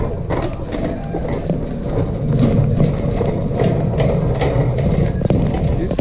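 Shopping cart rolling over a hard store floor: a continuous low rumble with many small clicks and rattles from its wheels and wire basket.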